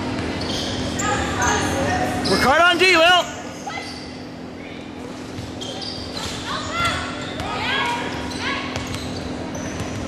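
Basketball play on a hardwood gym floor: the ball dribbling and sneakers squeaking, under a steady hum. The loudest sound is a wavering squeal about two and a half seconds in, lasting under a second, followed later by a run of short rising squeaks.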